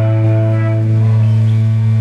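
Live electric blues-rock band jamming: electric guitars and bass holding long, sustained notes over a steady low drone.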